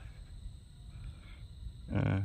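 Low, irregular rumbling on the microphone, typical of handling or wind noise, with a brief voice sound at the very end.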